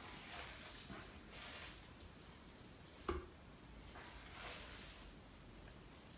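Faint, soft squishing and patting of hands working a sticky ground-venison sausage mix, scooping it from a bowl and packing it into a stainless-steel sausage stuffer canister. There is a single short knock about three seconds in.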